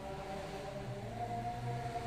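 A steady background hum made of several held tones, low and unchanging.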